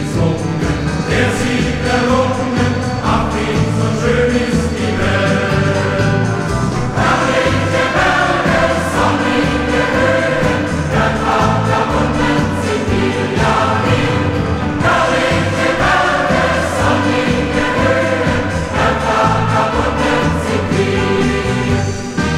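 Music: a choir singing in chorus over instrumental accompaniment with a steady beat.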